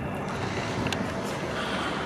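A steady engine drone with a low hum, running evenly under a broad outdoor noise.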